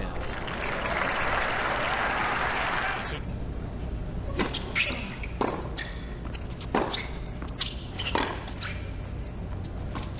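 Crowd applauding for about three seconds, then sharp knocks of a tennis ball bounced before the serve and struck by rackets in a rally, about five hits a second or more apart.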